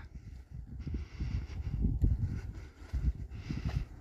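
Low, uneven rumbling noise on the microphone with faint rustling, and no voice.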